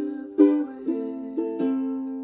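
Ukulele strummed in chords, a strum about every half second with the strings ringing on between strokes and a change of chord midway.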